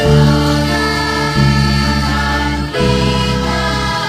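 Children's choir singing long held chords with instrumental band accompaniment; the chord changes about a second and a half in and again near three seconds.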